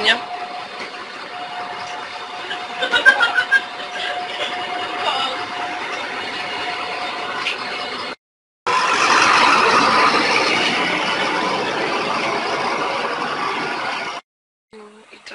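A bus running and pulling away, with a steady whine over street noise and voices; after a brief cut, a louder, even rush of noise.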